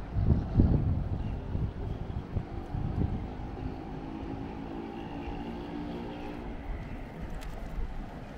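Wind buffeting the microphone, strongest in the first second, then a steady engine hum of even tones that holds through the middle seconds and fades near the end.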